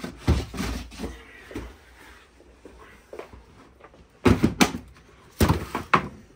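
Hollow plastic knocks and clatters of a heavy-duty storage tote being pulled out from a bottom shelf and its lid opened: a few light bumps, then several sharp knocks in the last two seconds.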